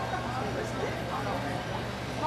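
Faint voices and crowd chatter over a steady low hum from the stage's sound system, in a lull between songs before the band plays again.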